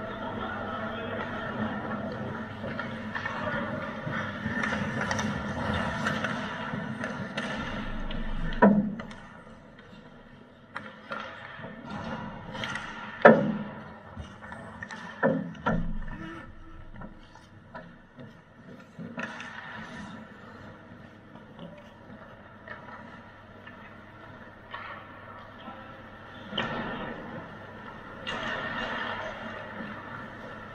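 Ice hockey play at the goal mouth: sharp cracks of puck and sticks striking, the loudest about nine and about thirteen seconds in, with a few more around fifteen to sixteen seconds, over the scrape of skates on the ice.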